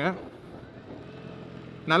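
Faint, steady running of a Bajaj Dominar 250's single-cylinder engine with road noise while the bike is ridden. The rider's voice stops just after the start and comes back near the end.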